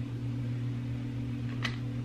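A steady low hum with a faint click about one and a half seconds in.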